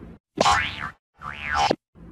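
Two short cartoon 'boing' sound effects, each about half a second long, gliding up and back down in pitch. Each cuts off abruptly into silence.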